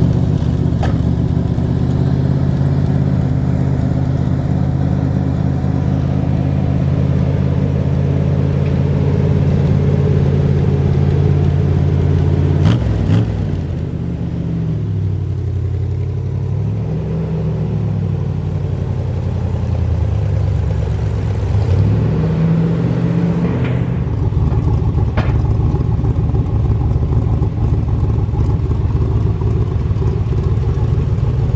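A 1966 Chevrolet Corvette's V8 running through its side exhaust pipes, idling steadily. There is a brief click about a third of the way in. Through the middle the revs rise and fall several times, then it settles back into a steady idle.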